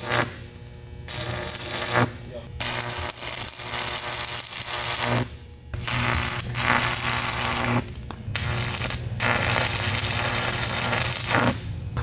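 Stick welder arc crackling and sizzling in about five bursts of one to three seconds, with short pauses between them, as a leak hole in a pontoon tube is filled in a little at a time. A steady low hum sits underneath.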